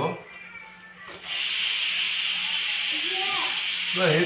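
A loud, steady hiss starts about a second in and cuts off suddenly at the end. Near the end a faint short rising-and-falling call is heard beneath it.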